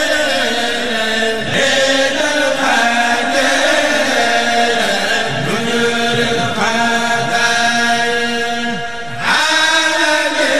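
A man's voice chanting a Mouride xassida (Sufi devotional poem) through a microphone, in long held notes that slide up and down in pitch, with a short breath just before the end.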